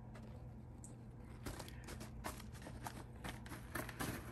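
Faint light scratching and rustling of wood-chip bedding in a plastic tub as a mouse scrambles, a scatter of small clicks starting about a second and a half in, over a low steady hum.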